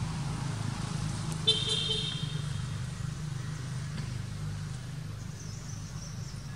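A steady low engine hum, with a short horn-like toot about one and a half seconds in.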